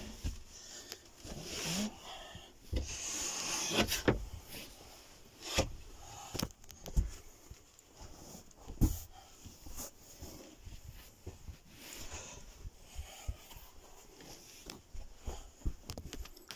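Scattered light knocks and rubbing of plywood boards being handled in a camper van's bed base, with no steady sound between them.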